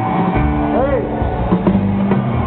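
A rock band playing live in a large hall, recorded from the audience. Held, steady instrument notes sound throughout, with one short rising-and-falling pitch glide just before the middle.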